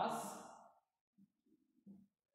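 A man's voice slowly drawing out one dictated word, 'was', ending in a long breathy hiss, then a few faint low murmurs.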